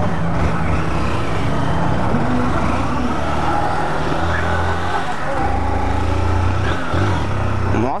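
Honda CG 160 Titan motorcycle's single-cylinder four-stroke engine running steadily, from the rider's seat, as the bike pulls away and rides along a street, with a steady rush of wind and road noise.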